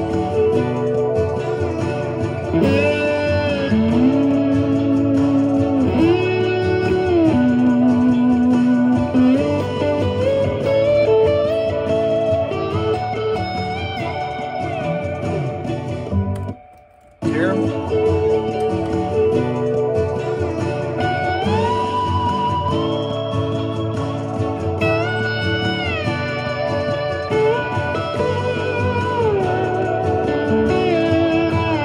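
Electric slide guitar on a vintage Gibson ES-335 playing a simple, melodic solo over the full song, its notes gliding up and down between pitches. The music cuts out for about half a second some seventeen seconds in, then picks up again.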